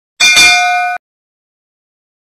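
Notification-bell sound effect: a single bright metallic ding that rings for under a second and then cuts off abruptly, about a second in.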